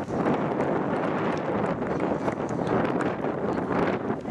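Wind buffeting the microphone in a steady, rough rush, with a few faint knocks.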